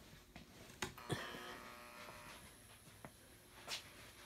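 Light switch clicking on about a second in, followed by a faint, steady electrical buzz from the basement light.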